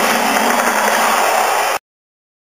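Loud, steady rushing noise with no clear pitch, which cuts off abruptly near the end.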